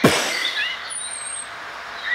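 Explosion sound effect: a sudden blast right at the start, then a long hissing roar that slowly fades away.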